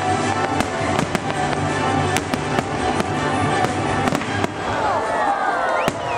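Fireworks going off over an orchestral show soundtrack: about a dozen sharp bangs and crackling bursts through the first four and a half seconds, with one more near the end. Near the end the music swells with gliding, sustained melody lines.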